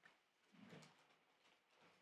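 Near silence: room tone, with two faint, brief sounds, one about half a second in and a smaller one near the end.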